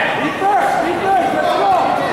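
Ringside voices shouting over crowd chatter, echoing in a large hall.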